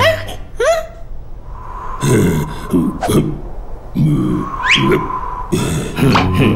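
Wordless cartoon-character vocal sounds, short grunts and murmurs in two clusters, over a thin steady high tone, with a quick rising whistle-like glide near the end.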